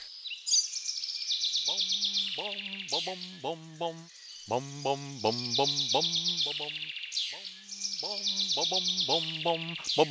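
A voice sings 'bom-bom, bom-bom, bom, bom-bom' three times in a bouncy rhythm over cartoon birdsong, with rapid chirps and trills.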